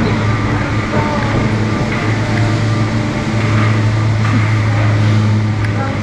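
A loud, steady low machine hum over a constant rushing noise, with faint voices in the background.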